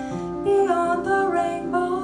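A woman singing a melody into a microphone with instrumental accompaniment, her voice holding notes and sliding between pitches.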